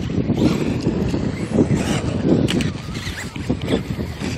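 Wind buffeting the microphone: a heavy low rumble that rises and falls in gusts.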